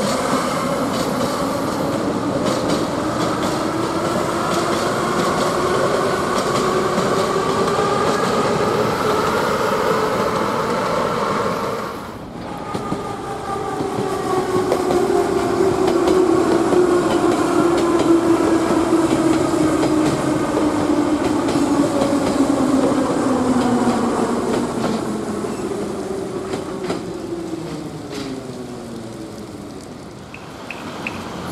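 Metro train's traction motors whining over the rumble of its wheels on the rails. For the first twelve seconds the whine rises in pitch as the train gathers speed. After a brief dip it comes back as a whine falling steadily in pitch as a train slows into the station, fading near the end.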